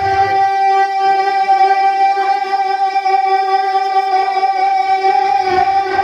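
A man's voice holding one long, steady sung note over a loudspeaker system, part of a sung Urdu poem (kalam) recitation.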